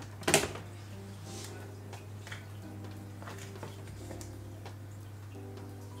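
Soft background music with a low steady hum under it. A single sharp knock of kitchenware against the metal mixing bowl comes just after the start.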